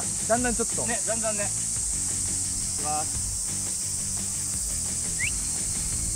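Cicadas droning in a steady high-pitched hiss. Short voice-like calls come in the first second and a half, and a brief rising chirp about five seconds in.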